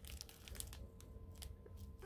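Faint crinkling of a clear plastic packet of diamond-painting drills as it is handled, a few soft scattered crackles.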